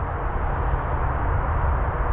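Steady low rumbling background noise with no distinct event in it.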